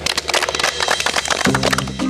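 A small group applauding with quick, irregular hand claps over background music; a low music chord comes in about a second and a half in.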